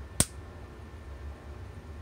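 A single sharp snap from shorting out the capacitor in the coil circuit, which starts the coil voltage ramping up. A steady low hum runs underneath.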